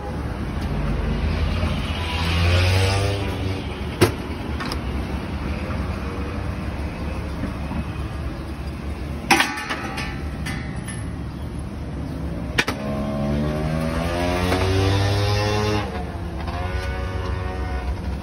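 Road traffic: a steady low engine hum, with vehicles twice speeding up and rising in pitch, about two seconds in and again around thirteen seconds. A few sharp clinks of metal utensils against metal pans come through as well.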